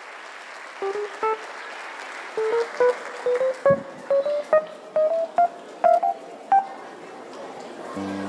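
A live band instrument playing single short notes in a slowly rising line, about two to three notes a second, over steady applause in a hall.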